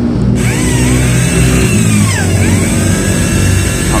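Bosch GBM 350 electric drill switched on about half a second in and run free, its motor whine rising and falling in pitch. It runs smoothly, without binding, on a new chuck-shaft bushing made from a bearing that replaced the worn one that let the head wobble.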